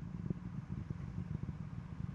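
Low rumble with irregular crackling from Space Shuttle Discovery's solid rocket boosters and three main engines firing during ascent, heard from far off.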